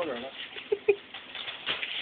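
A newborn baby sucking on a bottle, with two short squeaks a little under a second in.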